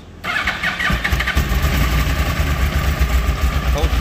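2012 Yamaha R1's crossplane-crank inline-four turning over on the electric starter for about a second, then catching and settling into a steady idle.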